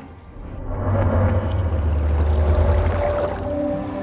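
Background documentary music: a deep, low rumbling swell builds over the first second and holds, and soft sustained notes come in near the end.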